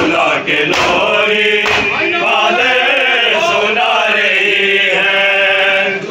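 Group of men chanting an Urdu noha, a Muharram mourning lament, together in unison, with a few sharp slaps in the first two seconds.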